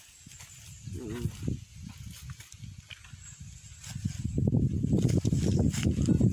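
Scraping and crackling of a stick and hands digging at a buried metal lid in dry soil, faint at first and much louder in the last two seconds.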